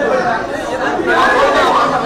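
Indistinct chatter of several people talking at once, a steady babble of overlapping voices with no one voice standing out.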